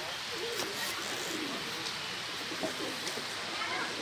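White domestic pigeons cooing, a few low calls over a steady background hiss.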